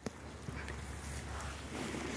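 Goats grazing close by: faint rustling and soft taps in the grass, after a single click at the very start.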